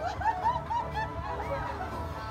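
A woman laughing in a quick run of short, high bursts through the first second or so, over a low steady rumble.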